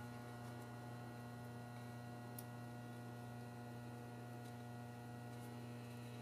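Faint steady low electrical mains hum, with a faint tick about two and a half seconds in.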